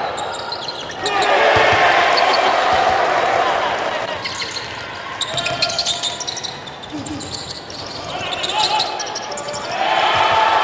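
Live game sound of a basketball game in an arena: a steady wash of crowd noise and voices, with a basketball bouncing on the wooden court.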